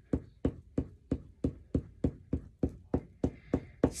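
Steady, evenly spaced tapping on paper, about three taps a second, while a paper cutout is glued down.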